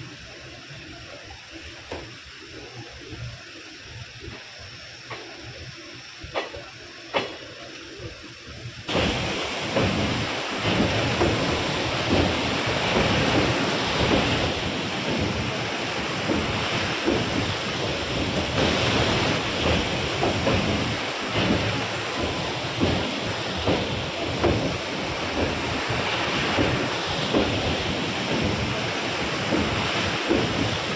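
Wind buffeting the microphone over open floodwater, a gusty rushing noise with low thumps. It jumps suddenly louder about nine seconds in.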